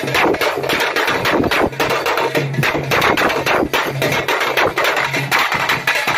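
Teenmaar music: a loud, fast, dense drum beat of closely packed strikes over a pulsing low note.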